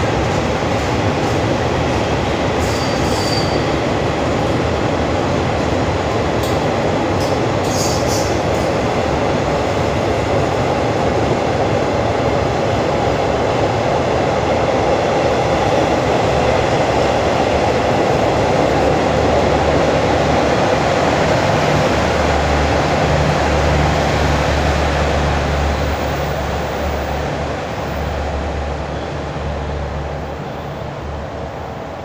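Passenger coaches of a departing train rolling past a station platform: a steady rumble of wheels on rail, with brief high wheel squeaks about 3 and 8 seconds in. The sound fades over the last few seconds as the end of the train pulls away.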